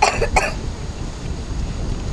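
A person coughing twice in quick succession, over a steady low rumble.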